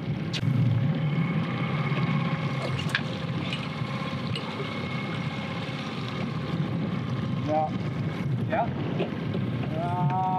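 Outboard motor running steadily while the boat trolls, with wind buffeting the microphone. There are a couple of brief voice sounds near the end.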